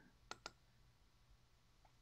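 A computer mouse button double-clicked: two quick, sharp clicks about a third of a second in, with faint room tone around them.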